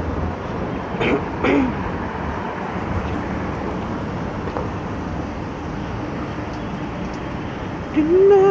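Steady city road traffic noise, with a person coughing twice a little after a second in.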